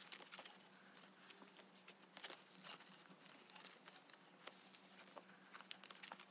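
Faint rustling and soft scattered clicks of a stack of photocards being flipped through and sorted by hand.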